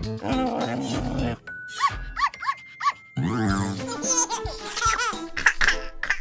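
Cartoon soundtrack: music over a small puppy's four short yips and character vocal sounds with some laughter, with a falling pitched sound effect a little after three seconds in.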